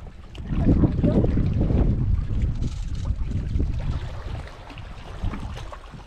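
Wind buffeting the camera microphone: a low rumble that swells about half a second in and eases after about four seconds.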